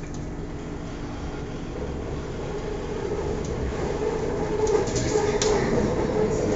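Bangkok BTS Skytrain carriage running on the elevated track, heard from inside: a steady rumble with a whine that grows louder over the second half, and a few short sharp clicks near the end.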